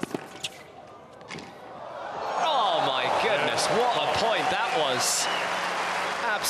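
Tennis ball struck and bouncing, a few sharp hits in the first second and a half. Then a stadium crowd breaks into loud cheering and shouting from about two seconds in and keeps it up.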